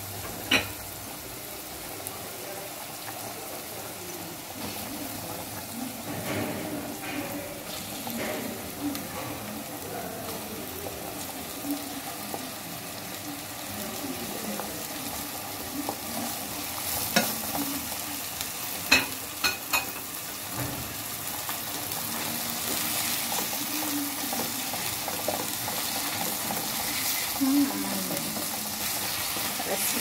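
Onion, green pepper and garlic sizzling in oil in a steel pot while a wooden spoon stirs them; minced meat goes into the pot partway through, with a few sharp knocks against the pot, and the sizzle grows louder in the second half.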